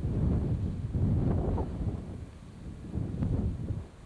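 Wind buffeting an outdoor camcorder microphone: a low, noisy rumble in gusts, strongest over the first two seconds and again about three seconds in.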